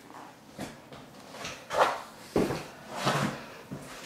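Chiropractic neck adjustment: a single sudden crack from the neck joints partway through, with breathy sounds around it.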